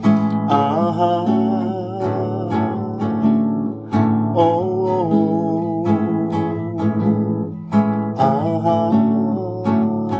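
Acoustic guitar strummed in a steady rhythm of chords, with a man's voice singing or vocalising over it.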